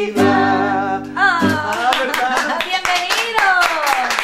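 Nylon-string classical guitar ending on a strummed chord that rings for about a second and a half, with a voice singing long held notes that slide down near the end. Hand clapping starts about two seconds in.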